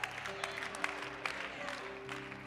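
Soft background music of sustained, slowly changing chords, with scattered clapping from the congregation.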